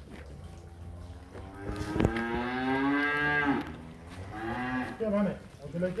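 Holstein-Friesian cattle mooing: one long call of about two seconds, starting about a second and a half in and dropping in pitch as it ends.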